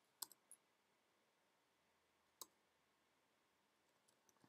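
Near silence broken by a few faint clicks from computer input while code is being edited: three close together right at the start and a single one about two and a half seconds in.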